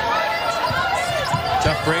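A basketball being dribbled on a hardwood court, with repeated bounces.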